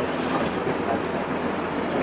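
A pause between spoken phrases, holding only steady background noise: an even hiss with a low hum underneath, from the hall and its sound system.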